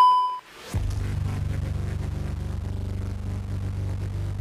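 Editing sound effect for a video transition: a ringing electronic beep fades out in the first half-second, then a steady low droning hum with a fast flutter sets in about a second in.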